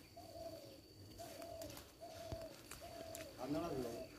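A bird calling: four short, even notes about a second apart, then a more complex, wavering call near the end.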